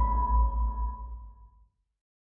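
Logo sting sound effect: a sustained electronic ping tone over a deep bass rumble, ringing out and dying away about a second and a half in.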